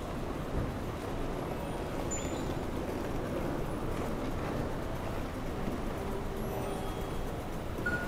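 City street ambience: a steady rumble of traffic and engines on a wide road. Faint music comes in over it near the end.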